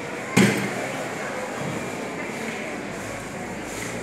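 A single sharp thump about a third of a second in, followed by a steady murmur of hall noise with faint voices.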